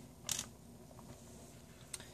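Small metal parts of a revolver's lockwork being handled: a short scrape about a quarter second in, then two light clicks, the last one sharper, near the end.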